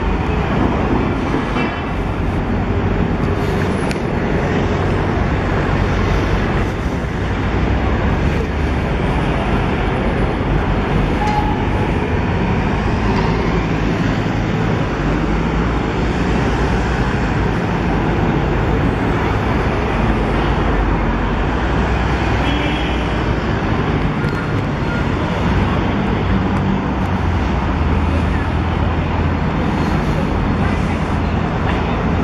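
Steady city street traffic noise: cars, black taxis and buses running past, with a constant low rumble.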